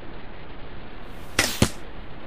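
A compound bow being shot: two sharp cracks about a quarter second apart, the second the louder.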